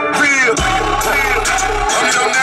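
Background music: a song with a sung vocal over a deep bass line that comes in about half a second in.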